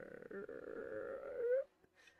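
A man's voice imitating a creaking door swinging open: one long, gravelly creak that rises in pitch at the end and then cuts off.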